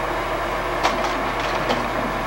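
Slide projector running with a steady fan hum, and a few short mechanical clicks a little under a second in as the carousel advances to the next slide.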